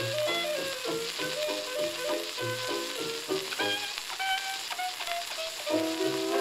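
A 1928 hot jazz dance band recording playing from a 78 rpm shellac disc, with a steady crackle and hiss of record surface noise under the melody and a bouncing bass line. Near the end the full band comes in louder.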